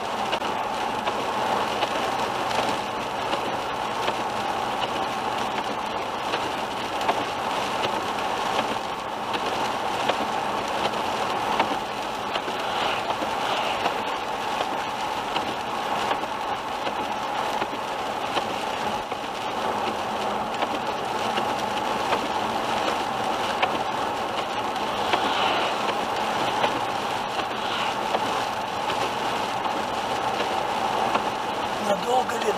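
Steady noise of a car driving on a wet highway in rain, heard from inside the car: tyres hissing on the wet road and rain on the windscreen, with faint scattered ticks.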